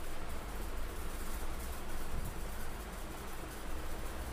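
Steady background noise with a low rumble and no distinct events.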